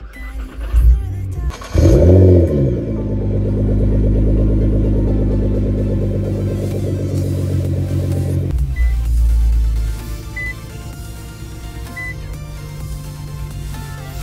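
2016 Nissan GT-R's twin-turbo 3.8-litre V6 through its mid pipe and HKS exhaust, started up: it fires about two seconds in with a rev flare that rises and falls, then settles into a steady fast idle. From about ten seconds in it runs lower and quieter.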